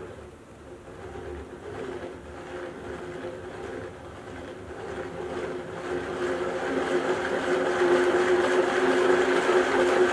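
3D-printed plastic harmonic drive gearbox running, its flex spline teeth meshing with the circular spline. It gives a steady mechanical whir with a hum in it, and grows clearly louder in the second half.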